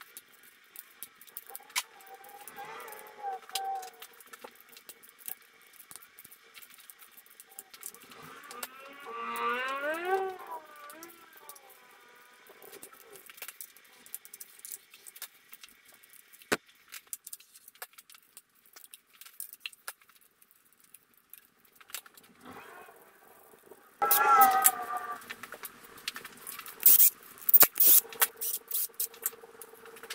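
Ratchet wrench clicking as it loosens connecting-rod cap bolts on a bare 6.0 L LQ9 V8 engine block, with a short squeak about ten seconds in and another near the end. A run of loud metal clinks follows as a rod cap comes off.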